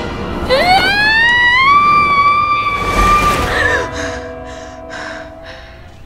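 A woman's loud scream that rises in pitch and is then held for about three seconds. It gives way near the end to a trombone played badly, with a groan.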